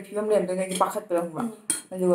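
Metal spoon clinking and scraping against a ceramic plate of salad, under a woman's talking, with a sharper clink near the end.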